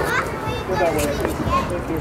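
Children's voices and background chatter.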